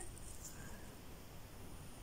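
Quiet room tone: a faint, steady hiss with no distinct sound in it.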